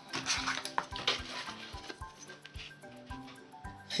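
Soft background music with a steady beat, with the rustle and scrape of grey board and paper being handled and slid on a cutting mat, mostly in the first second or so.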